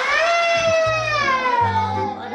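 An edited-in comic sound effect: one long pitched tone that slides slowly downward for nearly two seconds, over background music with a pulsing bass.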